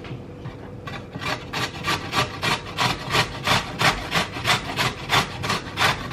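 Raw pumpkin being grated on a stainless-steel box grater: quick, regular rasping strokes, about four a second, starting about a second in.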